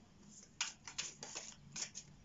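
A deck of round oracle cards being shuffled by hand: quiet at first, then about six quick papery snaps from about half a second in as the cards slide over one another.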